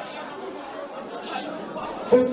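Indistinct murmur of many voices from a congregation, with no single clear speaker.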